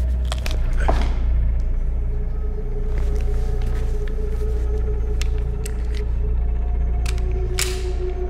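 Dark suspense film score: a low rumbling drone with two steady held tones under it. A few sharp hits come about a second in, and a louder noisy swoosh comes near the end.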